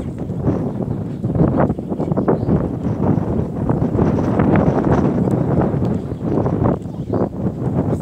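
Wind buffeting the microphone, a loud, uneven rumble that swells and dips.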